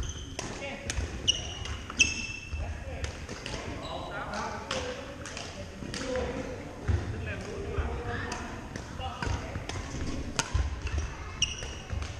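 Badminton play on a gym's hardwood floor: sharp racket strikes on shuttlecocks all through, a few short sneaker squeaks, and voices of players talking.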